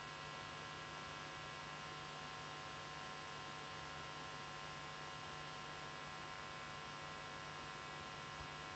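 Steady electrical hum with a constant hiss underneath, several fixed tones held without change, and no other sounds.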